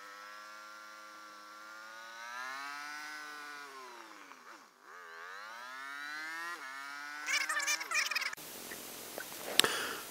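Motorcycle engine running on the move. Its note falls as the bike slows, reaching its lowest point about halfway through, then climbs as it accelerates away.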